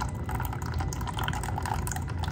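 Used engine oil pouring in a steady stream from a motorcycle engine's drain-plug hole into a drain pan, splattering on the oil already collected there.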